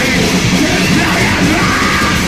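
Live heavy punk or metal band playing loud, distorted music with a yelled vocal over it.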